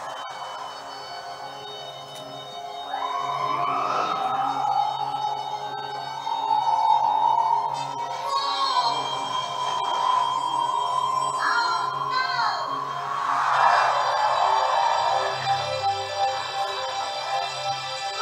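Cartoon soundtrack playing from a television: sustained background music carrying a melody, with a few brief character cries partway through.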